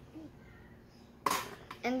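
A quiet moment, then a single short sharp clatter a little over a second in, like a small hard object being set down, followed by a boy saying "and".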